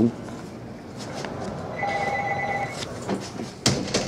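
An electronic telephone ringing: one short warbling ring of about a second in the middle, a steady lower tone under a rapidly pulsing higher one. A sharp click follows shortly before the end.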